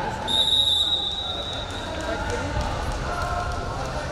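A referee's whistle blown once, a steady high tone lasting about a second, over the low rumble of a large hall with faint voices.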